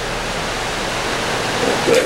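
Steady road and wind noise of a moving vehicle, heard from inside the car, with a short murmur near the end.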